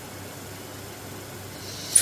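Steady low hiss of room and microphone noise, with a man's quick in-breath just before the end.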